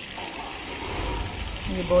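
Tap water pouring from a hose at full pressure onto clothes in a top-load washing machine drum, a steady splashing rush as the tub fills quickly. A man's voice starts near the end.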